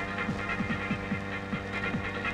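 Dramatic film background score: a steady electronic drone under a quick pulse of short falling bass notes, about four a second.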